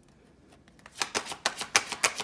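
Tarot deck being shuffled by hand: after a quiet first second, a quick run of card slaps and flicks at about eight to ten a second.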